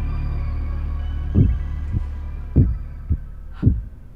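Horror-film sound design: a low droning hum with held organ-like tones that fades away, under heartbeat thumps that begin about a second and a half in and come about half a second apart.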